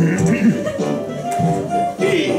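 Music playing, with notes held for a second or so, and a short hum from a man at the start.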